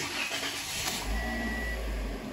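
A 2016 Toyota Corolla's four-cylinder engine being started, heard from inside the cabin: the starter whirs, then a low rumble sets in about a second in as the engine catches. A brief steady high tone sounds over it.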